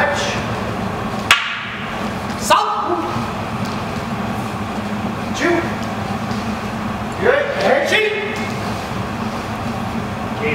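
A man's short shouted calls, counting off the moves of a sai drill: one about five and a half seconds in, and a cluster a little after seven seconds. Two sharp knocks come early, about a second apart, over a steady low room hum.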